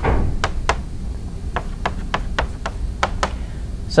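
Chalk writing on a chalkboard: a short scrape at the start, then a run of sharp, uneven clicks at a few a second as the chalk strikes the board.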